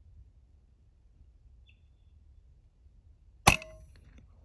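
One sharp shot from a moderated .22 PCP air rifle (FX Wildcat), about three and a half seconds in, with a short ringing tail.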